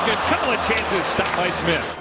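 Ice hockey game sound in an arena: crowd noise full of many voices, with sharp clacks of sticks and puck, one stands out clearly a little past halfway.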